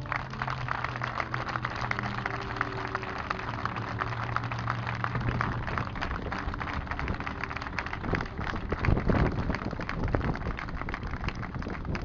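Crowd applauding: many people clapping their hands in a dense, steady patter, swelling louder about nine seconds in.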